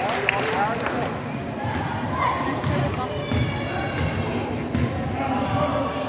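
Basketball being dribbled on a hardwood gym floor, repeated bounces under voices from players and spectators.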